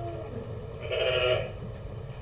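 A sheep bleating once, a call of about half a second starting about a second in, heard as playback through a presentation hall's speakers.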